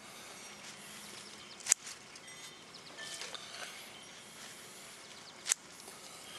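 Quiet outdoor background with two crisp snaps, one a little under two seconds in and one near the end, as leaf lettuce is pinched off by hand.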